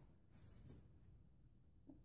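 Near silence, with a faint brief rustle of a paper card being handled about half a second in.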